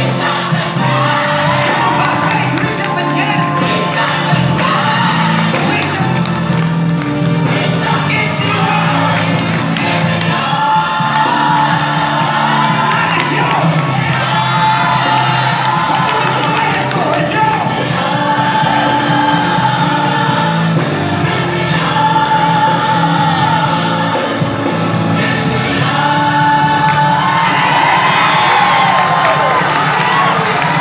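Gospel music playing loudly, with held, gliding sung notes over a steady backing, and crowd noise and cheering under it.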